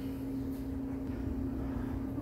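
A steady low electrical hum of a running household appliance, one unchanging tone with a faint rumble beneath it.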